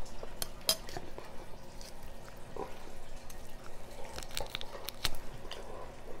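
Eating at a table: scattered small clicks and clinks of bowls and utensils, with chewing of chicken eaten by hand. A cluster of clicks comes about four seconds in, the loudest about five seconds in.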